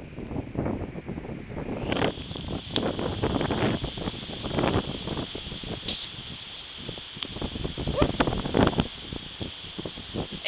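Wind buffeting the camera's microphone in uneven gusts, a low rumble with rustling and crackles. A faint steady high tone sits underneath from about two seconds in.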